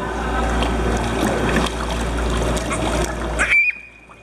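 Water splashing and churning in a stingray touch pool as the rays thrash at the surface for food, over a low steady hum. The splashing cuts off suddenly near the end, with a brief high tone.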